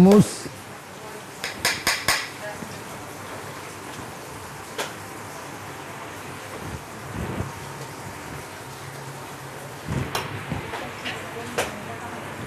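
Metal spoon clinking and scraping on a ceramic plate as a portion of hummus is spread and served, with a few sharp clinks about two seconds in and again near the end, over a low kitchen background.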